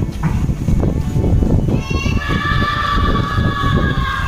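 A steady low rumble of outdoor noise, then, about two seconds in, a high-pitched voice starts and holds one long note to the end.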